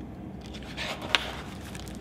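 A page of a picture book being turned: a soft paper rustle with a sharp click a little over a second in.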